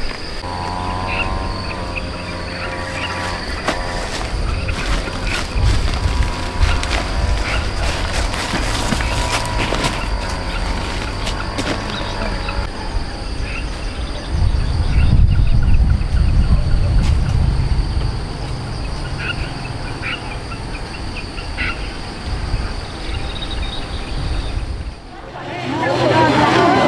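Outdoor ambience with faint, unintelligible distant voices, a steady high-pitched insect drone and a low rumble that swells for a few seconds in the middle. Scattered light rustles and clicks come from branches and a plastic sack being handled while fruit is picked.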